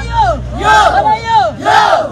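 A crowd of women shouting and cheering in celebration: loud, high voiced calls that rise and fall, several at once.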